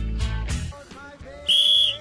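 A single short, steady whistle blast near the end, the signal for the penalty kick to be taken. Before it, background music with a heavy bass beat that drops away about two thirds of a second in.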